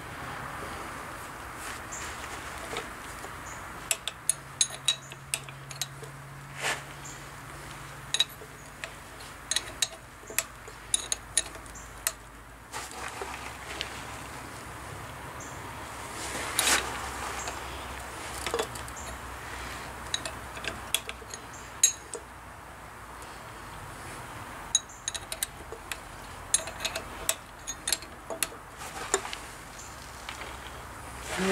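Scattered sharp metallic clinks and taps of tools and parts on an upright steam engine's valve gear, in two bursts, as the slide valve is being repositioned to set its lap and lead.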